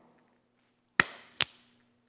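Two sharp percussive knocks about half a second apart, about a second in, the first the louder, each with a short ringing tail, over a faint steady hum.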